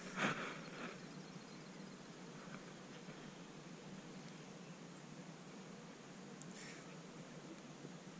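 Faint outdoor pond-side ambience, with a brief rustle of the camera being handled in the first second and a faint short scrape about six and a half seconds in.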